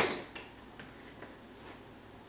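A few faint clicks and light handling taps as a rubber edge trim is pressed back onto the edge of an aluminium roof-rack wind deflector.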